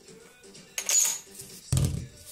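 A small cut-out ring set down on a wooden workbench: a light clatter about a second in, then a duller thump near the end, with faint background music underneath.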